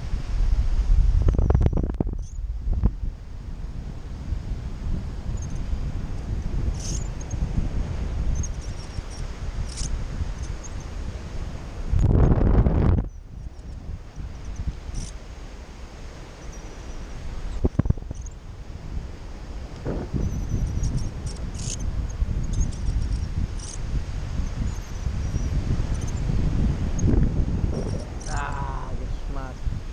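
Wind rushing over the microphone in flight under a paraglider, swelling into two loud gusts, about a second in and about twelve seconds in.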